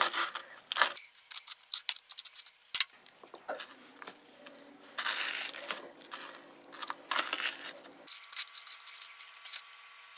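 A chef's knife clicking against a plastic cutting board as it cuts through a marshmallow, followed by soft, sticky squishing and rubbing as fingers press and wrap refrigerated cookie dough around the fillings.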